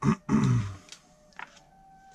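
A man's short, loud vocal burst, like a grunt or cough, falling in pitch and over within the first second. Faint background music plays under it.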